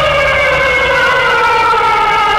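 A sustained, siren-like synthesizer tone with several overtones gliding slowly downward in pitch: an eerie horror-film sound effect.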